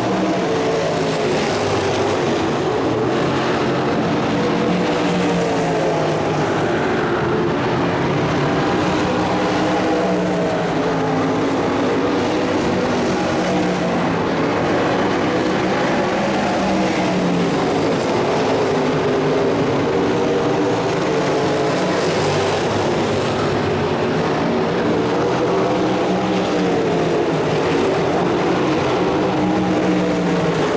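A field of winged sprint cars' V8 engines racing together on a dirt oval, their pitch repeatedly rising and falling as the cars lift and get back on the throttle.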